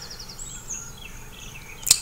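Quiet room tone with faint high-pitched chirps and a short rapid trill in the first second, then a single sharp click just before the end.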